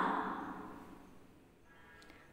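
A woman's narrating voice trails off at the end of a word and fades to near silence, with a faint thin tone near the end.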